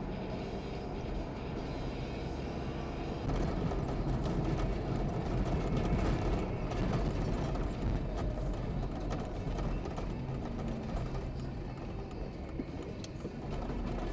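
Steady low rumble of a car driving, engine and road noise inside the cabin, with music playing underneath.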